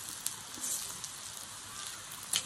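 Pork belly slices sizzling on a hot mookata dome grill pan: a steady, fine hiss, with a faint tick shortly after the start.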